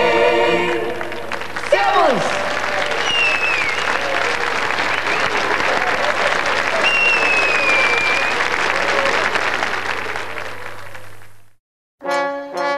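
Studio audience applauding as the choir's final sung chord dies away in the first second, with a few high whistles over the clapping; the applause fades out shortly before the end.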